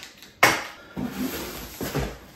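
A sharp knock about half a second in as a boxed item is set down on the counter, then the quieter rustle and bump of cardboard as a large shipping box is picked up.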